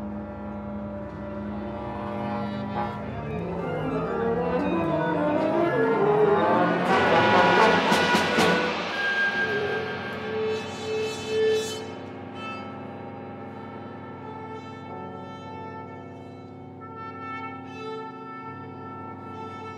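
Contemporary spectral-style chamber music: a solo French horn with winds, brass, strings and percussion. The texture thickens and grows louder to a peak with sharp accents about seven to eight seconds in, then thins out into quieter held tones.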